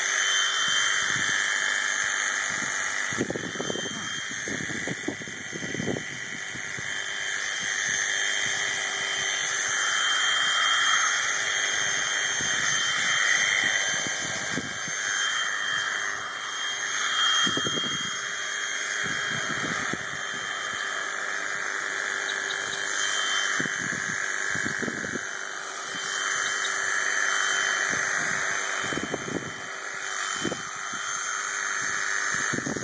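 Electric sheep-shearing handpiece running steadily through a sheep's fleece, a constant motor whine whose strength swells and dips as the comb works through the wool. Short low handling sounds come now and then.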